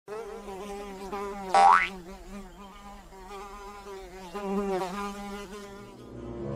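Flies buzzing steadily around a sleeper's face, the buzz wavering in pitch. About one and a half seconds in there is a brief, loud rising tone.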